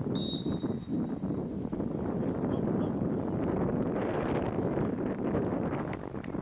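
Referee's whistle, one steady blast about a second long near the start, over the steady rush of wind on the microphone.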